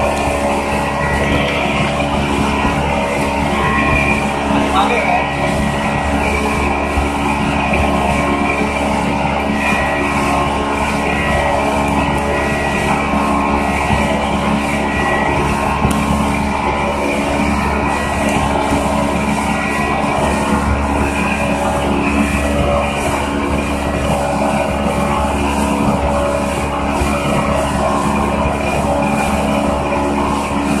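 Motorized watercraft engine running steadily at speed, with the rush of water and spray.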